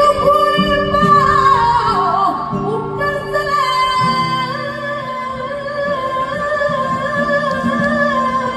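A woman singing flamenco cante, holding long notes with wavering ornaments and falling melismatic runs, over a nylon-string flamenco guitar accompaniment.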